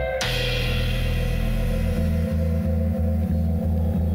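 Tense advert soundtrack music. It opens with a crash just after the start, then holds a sustained low drone, and about halfway through a steady low pulse of about three beats a second comes in.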